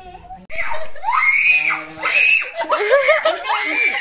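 A young child squealing and laughing while being lifted in the air: high-pitched cries that rise and fall, starting about half a second in.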